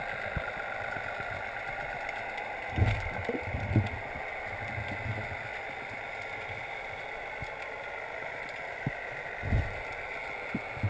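Underwater sound recorded through an action-camera housing: a steady hiss, broken by a few short low thuds about three seconds in and again near the end.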